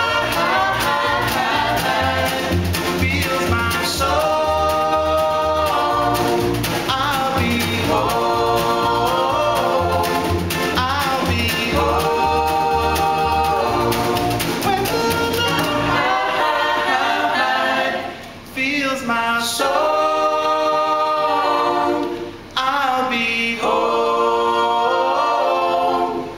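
Acoustic band cover of a song: upright bass, djembe struck with sticks, acoustic guitar, and several voices singing in harmony. About sixteen seconds in, the bass and drum stop and the voices carry on almost alone, with two short breaks between phrases.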